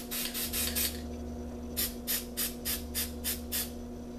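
Aerosol spray paint can hissing in short, quick bursts, about three a second: a burst of five, a pause of about a second, then seven more.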